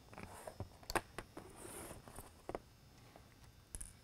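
Faint handling noise of small parts on a tabletop: a few short, sharp clicks, the loudest about a second in, with a soft rustle, as alligator clips are taken off the lighthead's wire leads and the wires are handled.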